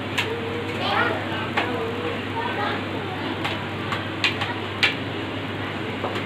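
Cumin seeds sizzling in hot oil in a kadhai, a steady hiss, with a few sharp clicks of a steel spoon against a plate.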